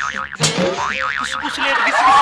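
Cartoon "boing" comedy sound effect: a warbling, spring-like tone that wobbles rapidly up and down in pitch, starting about half a second in.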